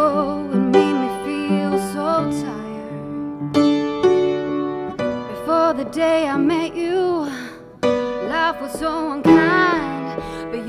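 Chords played on a keyboard, each struck note ringing on, with a woman's voice singing long notes with vibrato over them in the second half.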